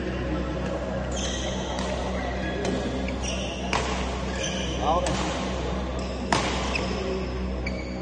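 Badminton play on an indoor court: shoes squeak repeatedly on the floor, and a few sharp racket hits on the shuttlecock come a couple of seconds apart.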